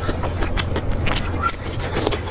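Close-miked eating: chewing and crisp lettuce leaves crackling in the hands as a lettuce wrap is folded, a dense run of small sharp clicks and crackles over a steady low hum.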